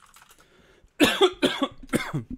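A man coughing three times in quick succession, starting about a second in.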